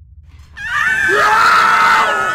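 Many voices screaming together at once, a sudden mass battle cry that breaks in about half a second in and holds loud, over a low rumble.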